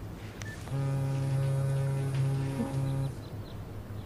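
A loud, steady low buzzing tone held for about two and a half seconds, with a brief break near its end, over a faint low hum.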